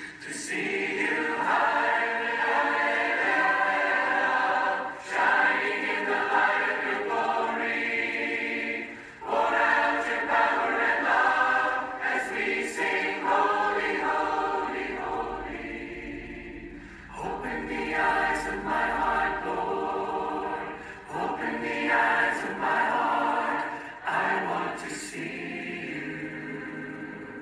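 A choir singing, in long phrases with brief pauses between lines.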